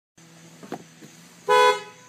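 Car horn gives one short toot about one and a half seconds in, heard from inside the car, over the faint steady hum of its idling engine.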